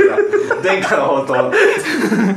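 Several people chuckling and laughing over bits of speech.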